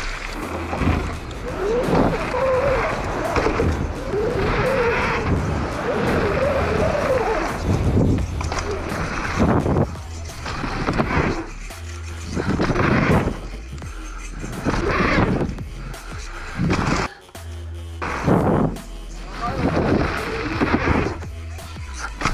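Background music with a steady bass line, over the rough rolling noise of a mountain bike's knobby tyres running on a dry dirt track, surging and fading as the bike goes over bumps and jumps.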